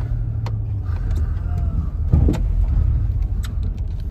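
Cabin sound of a 2008 Chrysler Town & Country minivan driving slowly: a steady low engine and road rumble with a few light clicks and a brief thump about two seconds in. The owner says the engine has a slight miss down low, which he puts down to needing a tune-up.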